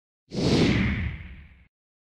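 Whoosh sound effect of an animated logo intro, starting about a third of a second in and fading away over about a second and a half, its hiss sliding down in pitch.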